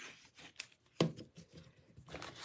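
A single sharp knock about halfway through as a plastic liquid-glue bottle is set down on a craft mat, among faint handling noise of cardstock.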